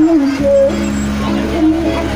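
Loud music from a truck-mounted speaker stack on a carnival float: a wavering melody over a held bass note that comes in about half a second in.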